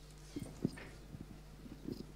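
Handheld microphone being handled as it is passed from hand to hand: a few soft knocks and rubs, the loudest about two-thirds of a second in, over a steady low hum.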